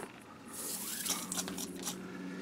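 Nylon paracord being pulled through and rubbing against a cord wrap on a metal underfolder stock: a soft scratchy rustling that starts about half a second in.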